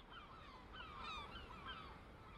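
Faint bird calls: many short chirps repeating over a low background hiss.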